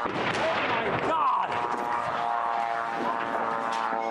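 Street commotion just after an airstrike: people shouting, with long drawn-out cries and a few scattered knocks and bangs.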